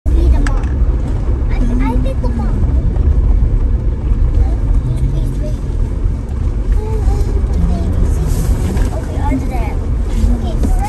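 Steady low rumble of a 4x4 driving on a rough dirt trail, heard from inside the cab: engine, tyres on gravel and wind, with faint voices in the background.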